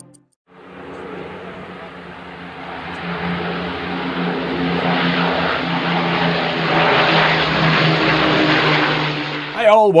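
Avro Lancaster bomber flying over, its four propeller engines droning steadily and growing louder as it approaches, cutting off sharply near the end.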